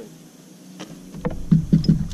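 Several hollow knocks and thumps on a bass boat's deck in quick succession in the second half, over a low rumble that comes in about a second in.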